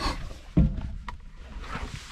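Belarus 825 tractor's non-turbo diesel engine running with a steady low rumble, heard from inside the cab. There is a low thump about half a second in.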